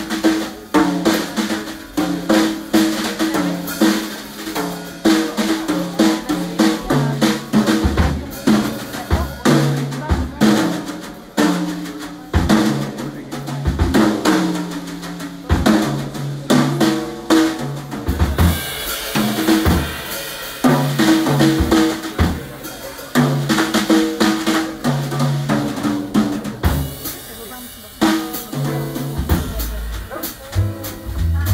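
Jazz drum solo on a drum kit: fast, busy strokes across snare, toms and bass drum, with rim shots and rolls. Cymbal wash swells in about two-thirds of the way through and again near the end.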